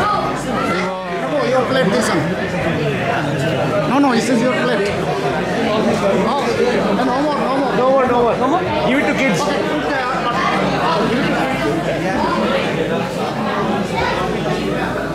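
Crowd chatter: many people talking at once in a large hall, steady throughout.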